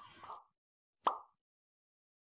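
A single short pop about a second in, sharp at the start and falling quickly in pitch, like a cartoon-style editing sound effect. It is preceded by a faint trailing breath or voice sound.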